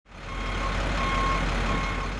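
A JCB 456 wheel loader's diesel engine running, with its reversing alarm sounding three evenly spaced high beeps: the machine is backing up.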